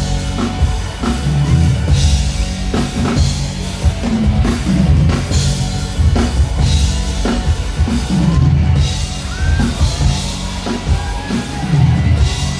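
Live band music played loud through a stage PA: a drum kit keeping a steady beat over bass guitar, with a melody line coming in during the second half.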